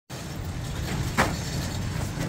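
Steady low engine-like rumble, with a single sharp knock about a second in.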